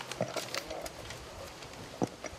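A few short clicks and rustles within the first second, then a low steady background.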